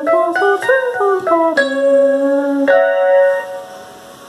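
A man singing the notes of a G-flat major chord with minor seventh one at a time, gliding between pitches, over an electronic keyboard. A longer held note comes about a second and a half in, and the sound fades out near the end.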